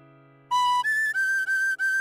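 Tin whistle playing a melody phrase of short, clean notes that starts about halfway in: one note, a jump to a higher note, then repeated notes a step lower. Before that, a held accompaniment chord dies away quietly.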